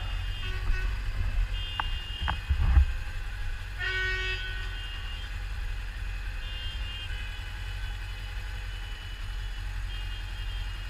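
Car horns honking again and again from the surrounding traffic, in several short blasts, the strongest about four seconds in. Under them runs the low steady idle of the Suzuki GS500 E's parallel-twin engine, with a brief louder low rumble a little before three seconds in.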